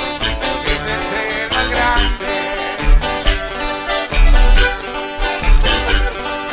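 Instrumental break of a live corrido: strummed and plucked strings and sustained melody notes over heavy, pulsing bass notes, with no singing.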